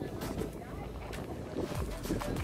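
Wind buffeting the microphone as a low rumble, over quiet background music.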